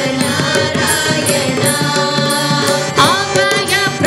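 Hindu devotional bhajan performed live: singing over a steady harmonium and tabla rhythm, with a single voice's ornamented, pitch-bending line standing out near the end.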